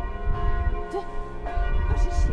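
Church bells ringing in the church tower, several overlapping tones sounding on together.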